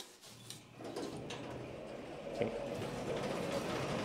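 A click as an old passenger lift's call button is pressed, then the lift running with a steady low hum and a few clicks as it arrives and its doors slide open.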